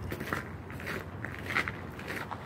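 Footsteps crunching on paving stones strewn with loose grit.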